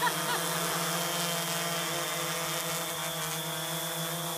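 DJI Phantom quadcopter hovering, its four rotors giving a steady, even buzzing whine made of several pitches at once.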